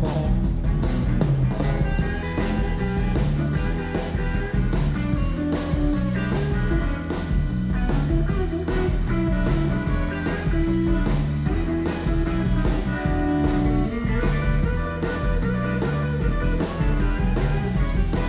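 Live blues-rock band playing an instrumental passage: a lead electric guitar solo over bass and drums keeping a steady beat.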